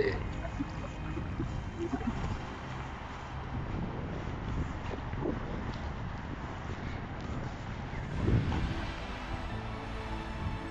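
Outdoor ambience: a steady low rumble of wind on the microphone under an even background hiss, with a slightly louder swell about eight seconds in.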